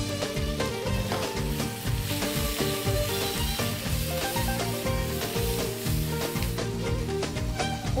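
Squid and onions sizzling in hot olive oil in a frying pan over a high gas flame, under background music with a steady beat.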